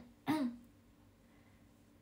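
A woman briefly clears her throat once, about a quarter of a second in, a short sound falling in pitch; the rest is quiet room tone.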